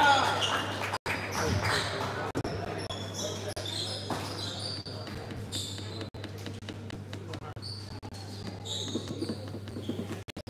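Sports hall ambience: voices, loudest at the very start, then quieter chatter from the team huddles. Through it come a few basketball bounces and many short, high-pitched squeaks.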